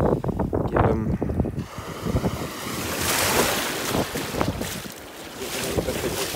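Shallow seawater splashing around a hand holding a small turbot under the surface to revive it. About three seconds in, a small wave washes in with a hiss that fades away, over wind on the microphone.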